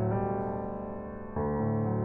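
Background piano music playing sustained chords, moving to a new chord a little past halfway.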